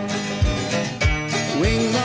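Live band playing a country-rock song in an instrumental stretch between sung lines: electric guitars over a drum kit with a steady kick-drum beat, about two beats a second.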